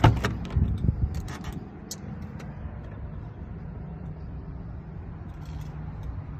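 Jeep Wrangler Sahara door opened with a sharp latch click, followed by a few low thumps and smaller clicks as someone climbs into the cab. A steady low rumble runs underneath.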